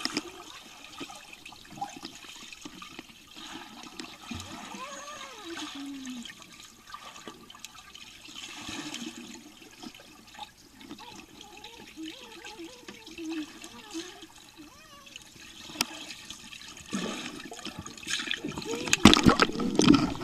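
Muffled underwater sound in a swimming pool: bubbling and gurgling water stirred by a swimmer's kicks, with faint muffled voices. In the last two seconds it turns louder, into splashing and gurgling.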